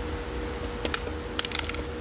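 Small gravel grains falling and clicking against a ceramic pot and wooden tray as gloved hands settle a repotted succulent, a quick scatter of light ticks in the second half, over a faint steady hum.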